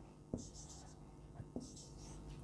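A marker writing on a whiteboard: a few faint short strokes, with light taps as the tip meets the board.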